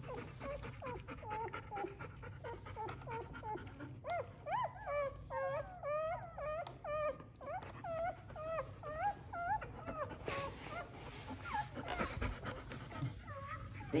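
Newborn puppies crying and whining in a string of short, high squeals that rise and fall, coming thickest in the middle stretch. They are "screaming" because their mother moved over them.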